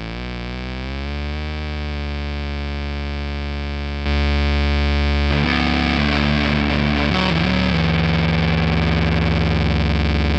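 Distorted guitar signal through a Fuzzrocious M.O.T.H. fuzz pedal: a sustained droning fuzz tone whose overtones sweep slowly up and down as the pedal's knobs are turned. About four seconds in it jumps louder, and a little after five seconds it turns into a rougher, noisier tone with pitches shifting in steps.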